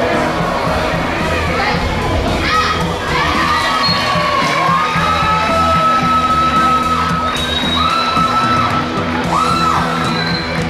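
Background music with a steady beat, mixed with a crowd cheering and shouting in high voices, with several long, high held shouts in the second half.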